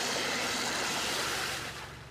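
Water rushing and splashing as it wells up through cracked pavement from a broken underground water line, a steady loud rush that fades near the end.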